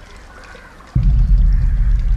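A deep, loud rumble starts suddenly about a second in and carries on steadily, a low drone typical of a horror film's soundtrack.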